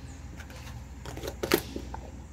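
A few light clicks and knocks of plastic containers being handled on a wooden table, the sharpest about one and a half seconds in.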